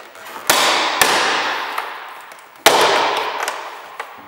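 Plastic retaining clips of a Volvo S60 rear door trim panel snapping loose as the panel is pulled off by hand: three sharp cracks, two close together near the start and one more about two seconds later, each trailing off over a second or so.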